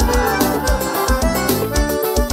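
Instrumental passage of live band music: an electronic arranger keyboard plays a melody over a steady kick-drum beat, with no singing.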